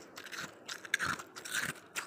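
Freezer frost being chewed close to the microphone: a run of crisp crunches.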